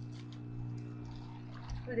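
A steady low hum runs underneath faint handling noise, and a woman says "ooh" near the end.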